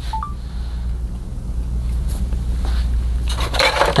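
Steady low hum with scattered small clicks and scrapes, then a short flurry of rustling and clattering near the end as parts of a disassembled PS5 are handled on the workbench.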